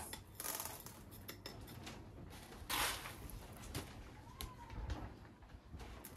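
Pumice gravel being scooped and poured into a succulent's pot: soft scraping and rattling of small stones, with one louder pour about three seconds in.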